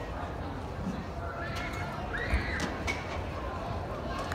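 Echoing ambience of a large indoor sports dome: a steady low rumble under scattered voices, with a sharp knock a little past halfway, two lighter clicks right after, and a brief high call.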